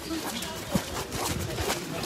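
Indistinct voices of a crowd of people walking together, with a couple of short knocks, one near the middle and one near the end.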